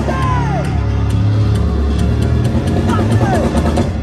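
Live rock band playing loudly, heard from the crowd: a heavy, sustained low-end wall of bass guitar, electric guitar and drums, with a voice yelling over it in falling glides. The music drops away sharply at the very end.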